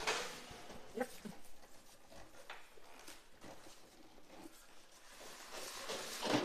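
Faint handling noise of a cardboard box and its plastic wrapping as an oven is worked out of it: a brief rustle at the start, then scattered light scrapes and taps.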